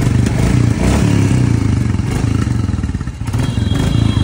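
A new Royal Enfield Bullet 350's single-cylinder engine running loudly, with a rapid, even exhaust pulse, started up to show off its sound.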